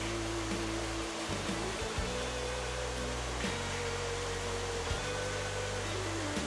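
Several electric toy trains running together on tinplate tubular track: a steady run of wheel and motor noise with a low electrical hum underneath.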